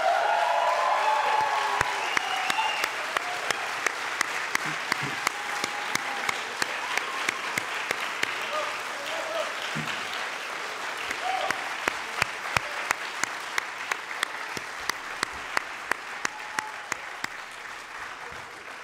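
Audience applause: many hands clapping at once, loudest at the start and slowly dying away, with a few voices over it in the first seconds.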